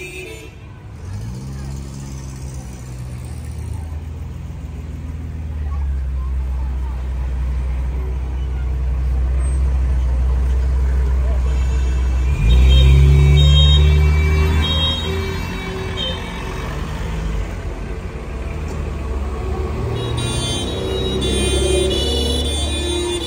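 Old cars driving slowly past at parade pace, their engines running with a low rumble that builds and is loudest about halfway through as one passes close.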